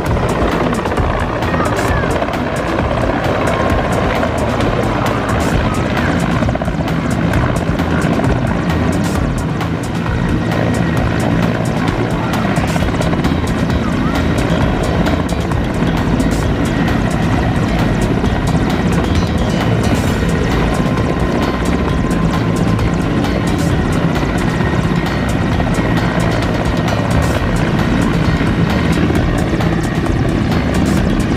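Mi-17-type twin-turbine military transport helicopter flying close by and hovering low, its main rotor and turbines running loud and steady with a low rhythmic rotor beat.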